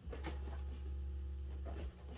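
Cardboard shoebox being handled, with scratchy rubbing and a couple of light clicks, over a steady low hum that cuts off just before the end.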